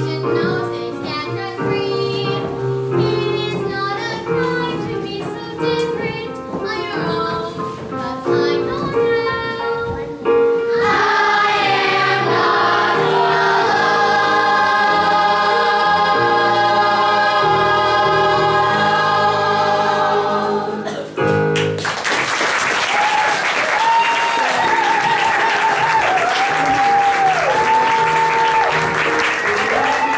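A stage-musical cast sings together with accompaniment, ending on a long held chord of about ten seconds that cuts off suddenly. A moment later the audience applauds.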